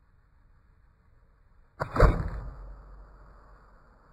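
A single suppressed rifle shot about two seconds in, sharp and loud, with a low rumbling tail that dies away over about a second.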